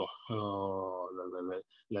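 A man's voice holding a long hesitation sound, 'eeh', drawn out at an even pitch for over a second before he goes on speaking.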